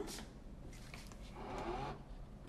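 Quiet room tone with a steady low hum, and a faint voice-like sound briefly about a second and a half in.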